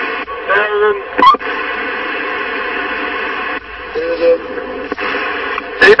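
CB radio (CRT SS6900N transceiver) receiving on 27 MHz during long-distance skip propagation: a steady, loud static hiss from the speaker, with faint, warbling voices of distant stations breaking through about a second in and again about four seconds in.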